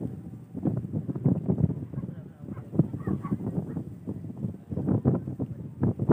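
Indistinct voices of people nearby over uneven low rumbling noise.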